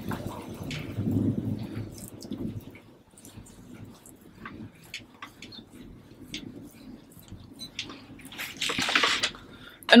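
Wet gram-flour and turmeric paste squelching as fingers scoop it from a glass bowl and rub it onto the skin of the upper lip. The rubbing is densest in the first couple of seconds, with small sticky ticks after it and a short rush of noise near the end.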